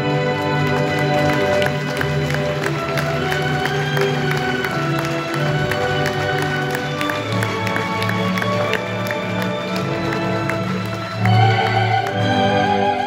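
Orchestral backing track playing an instrumental passage, with scattered audience clapping over it. Near the end a soprano voice comes in with a wide vibrato.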